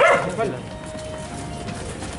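A short, loud shout from a person in a crowd, followed by lower crowd murmur with a faint steady tone.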